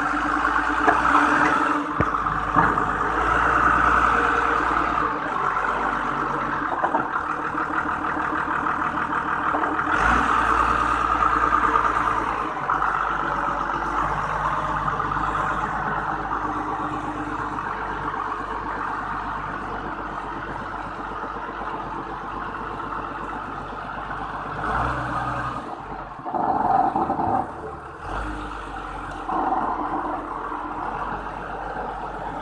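Forklift engine running, its sound swelling and easing as it works, with a few short knocks.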